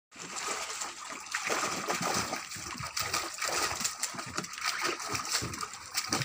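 Tibetan mastiff puppies splashing and pawing at water in a shallow plastic tub, a run of irregular splashes and sloshes.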